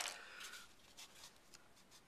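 A sharp click at the start, then faint rustling and light ticks of hands handling paper and a balsa stick on a tabletop.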